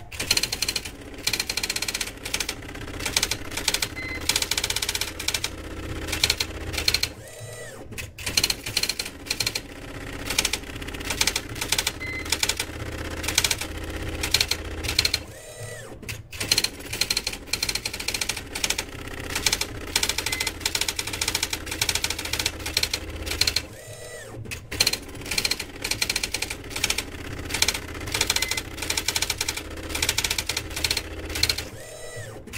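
Impact printer printing a line of ASCII art: rapid, steady clacking of the print head as it strikes along the line, over a low motor hum. About every 8 seconds there is a short break in the strikes, where the carriage returns and the paper feeds to the next line.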